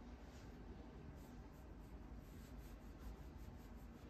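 Faint, soft rubbing of a hand stroking a cat's long fur, with a quiet scratchy texture.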